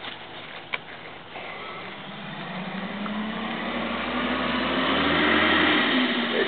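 A motor vehicle's engine and tyre noise approaching, getting steadily louder from about a second and a half in, with a low hum that rises slightly in pitch. There is one sharp click under a second in.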